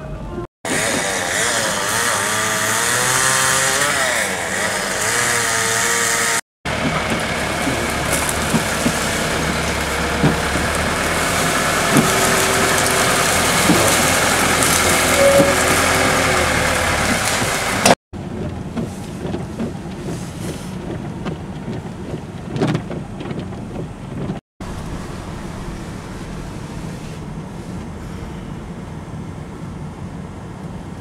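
A run of engine sounds split by edits. First a motor whose pitch wavers up and down. Then a backhoe's diesel engine running steadily. Then quieter road noise from inside a moving car.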